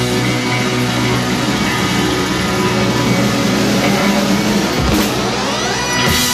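Live rock band playing with electric guitar and drums, sustained chords throughout and a rising pitch sweep near the end.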